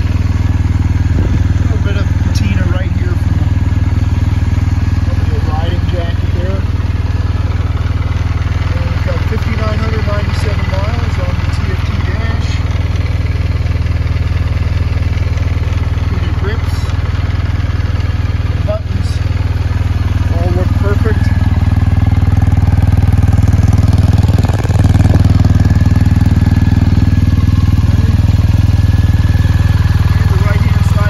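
A BMW R1250RS's boxer-twin engine idling steadily in neutral, a low even hum that gets a little louder over the last several seconds.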